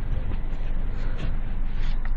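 A parked car's engine idling, heard from inside the cabin as a steady, even noise, with a few faint ticks of the camera being handled.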